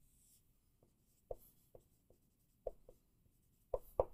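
Dry-erase marker on a whiteboard: about six short, faint strokes as a box is drawn and a word is written.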